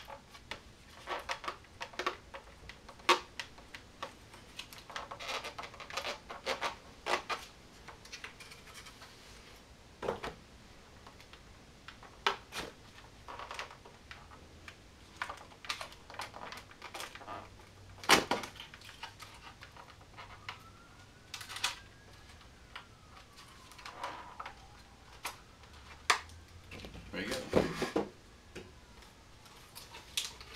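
A composite fuselage shell being flexed and worked out of its mold by hand: irregular sharp clicks, cracks and creaks as the part releases from the mold surface, the loudest crack a little past halfway.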